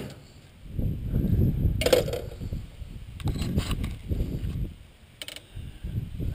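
Handling noise while a landed largemouth bass is held and unhooked: uneven low rustling and bumping, with a few short sharp clicks about two seconds in, around three and a half seconds in, and just past five seconds.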